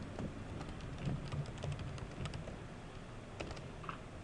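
Typing on a computer keyboard: a run of quick, irregular key clicks as an email address is typed in.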